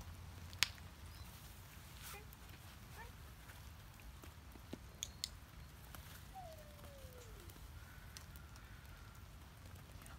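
Quiet outdoor background with a steady low rumble, a few scattered small clicks and taps, and one faint falling tone partway through.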